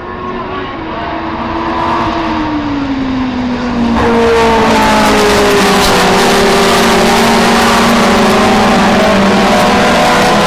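Engines of two classic Formula 2 single-seater race cars approaching at speed and passing close by. They grow louder, with a sudden jump in loudness about four seconds in, their notes falling in pitch and then running steady and loud. The sound is picked up harshly by a handheld camera's built-in microphone.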